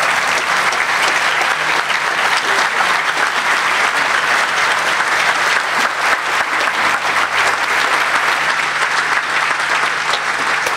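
Sustained applause from a large audience, steady throughout.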